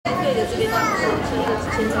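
Several people talking at once, overlapping voices in a busy room.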